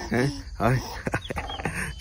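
A man's voice in short wordless vocal sounds, three brief bursts. A thin, high sound that bends up and down comes in the second half.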